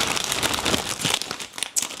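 A shopping bag being handled, rustling and crinkling in a dense run of small crackles.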